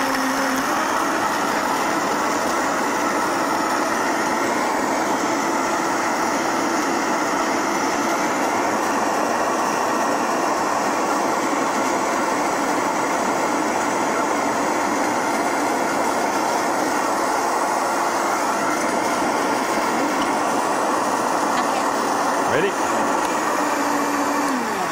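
Countertop blender running steadily at full speed, puréeing raw cashews with water and seasonings into a smooth liquid.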